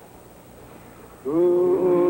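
Faint hiss, then about a second in a voice suddenly starts chanting one long, loud held note that rises at the start and then stays steady.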